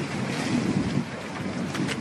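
Wind rumbling and buffeting on an outdoor microphone.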